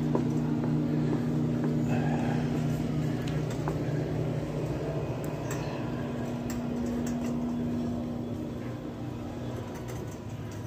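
Wire shopping cart rolling along a hard store floor, its wheels rumbling and the basket giving off scattered rattling clicks, over a steady low hum that drops out about three seconds in and returns a few seconds later.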